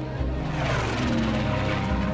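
A propeller aircraft's engine flying past: it swells about half a second in, and its pitch falls as it goes by.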